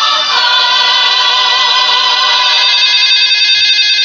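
Mobile phone ringtone going off, a loud, steady chord-like electronic tone that holds without changing pitch.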